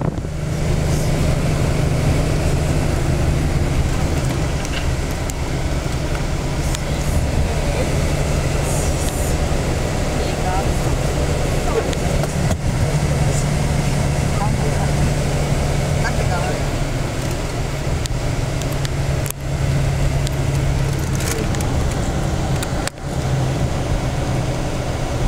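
Tour coach's engine and road noise heard from inside the cabin: a steady low drone.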